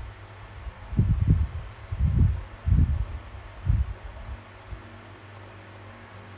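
Coloring pen working on a drawing clipped to a board, heard as four dull, low bumps in the first four seconds over a steady low hum.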